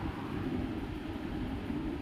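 Steady low background rumble with no distinct events.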